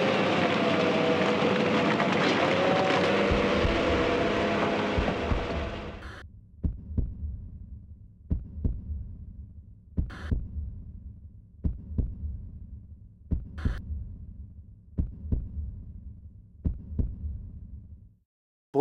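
A heartbeat sound effect: paired thuds about every second and a half over a low throbbing hum. A loud, dense rushing noise with a few faint held tones covers the first six seconds, then fades out.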